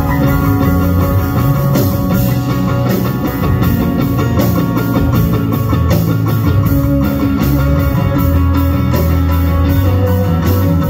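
Live band playing: electric guitar to the fore over a drum kit and keyboard.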